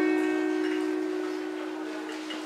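A chord on an acoustic guitar left to ring, slowly dying away.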